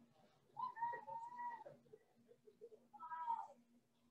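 A cat meowing twice: a longer call lasting about a second, then a shorter one near the end that drops in pitch as it ends.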